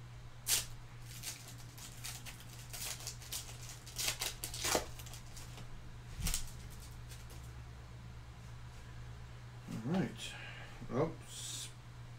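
Foil trading-card pack being torn open and handled: a string of short, irregular crinkles and crackles from the wrapper, over a steady low electrical hum.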